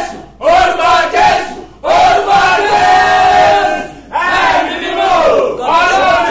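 A man praying aloud in a loud, impassioned shouting voice, in three long drawn-out phrases with short breaths between them.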